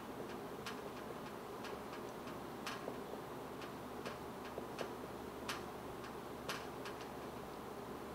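Marker pen writing on a whiteboard: faint, irregular short taps and squeaks of the pen strokes.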